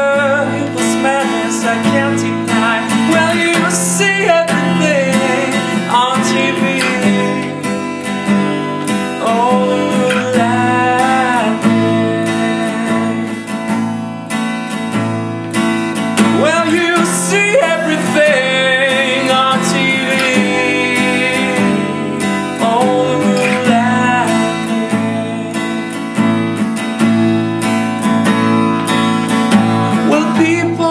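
A man singing, with sung phrases coming and going, over a steel-string acoustic guitar strummed steadily throughout.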